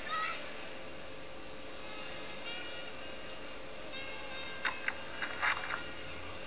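Crowd noise from a cricket ground on an old television broadcast, under a steady hum, with thin high wavering calls. A few sharp knocks come close together about five seconds in, the bat striking the ball among them.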